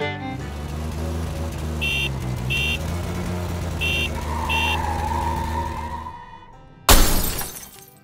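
Sound-effect car crash: an old motor car's engine runs steadily while its horn gives four short honks in two pairs, then a wavering squeal leads into a sudden loud crash with shattering glass about seven seconds in, dying away quickly.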